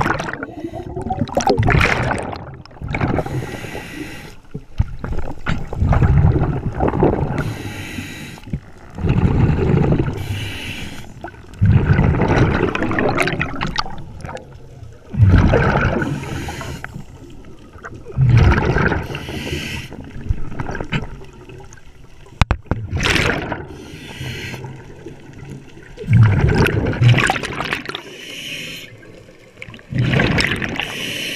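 A scuba diver breathing through a regulator underwater: an inhaled hiss alternating with a bubbling, gurgling exhale, in a slow rhythm of breaths every three to four seconds.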